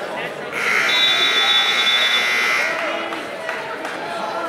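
Electric scoreboard buzzer of a gym wrestling mat, sounding once for about two seconds, with voices of the crowd around it.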